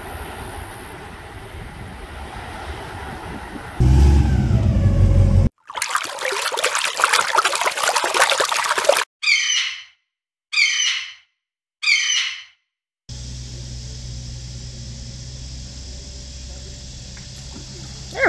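Outdoor sound clips cut together: a low rumble and a loud rushing noise, then three short high bird calls, each falling in pitch and separated by dead silence, then a steady low hum.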